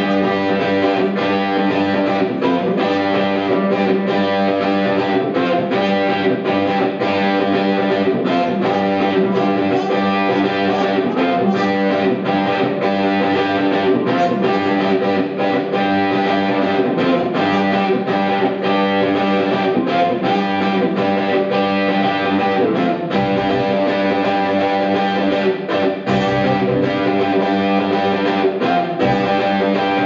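Live rock band playing an instrumental passage, with electric guitar to the fore over a steady beat.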